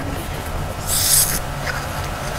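A squeeze bottle of white school glue gives a short, high hissing sputter about a second in as glue and air are squeezed out onto paper. A steady low hum runs underneath.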